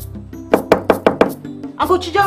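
A quick series of about five knocks on a wooden door over background music, with a woman's voice calling out near the end.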